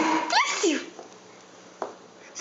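A person sneezing once, loudly, in the first second.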